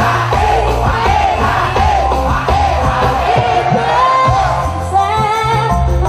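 A dangdut koplo band playing live: a woman sings a wavering melody over heavy bass and the quick strikes of kendang hand drums.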